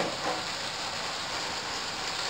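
A steady, even hiss with no rhythm or distinct strokes.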